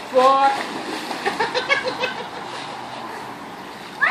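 A boy belly-flopping into a swimming pool off the diving board: a splash, then water washing and settling. A voice calls out at the start, and short bursts of laughter come about a second and a half in.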